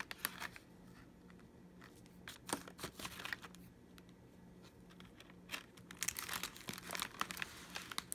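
Plastic wrapper and tray of a cookie pack crinkling as cookies are lifted out and handled, in two spells: about two and a half seconds in and again near the end.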